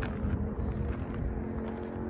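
Wind buffeting the phone's microphone in an uneven low rumble, with a faint steady hum underneath.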